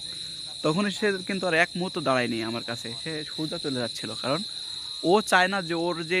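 Crickets chirring in a steady, high-pitched trill, with a man talking over it for most of the time.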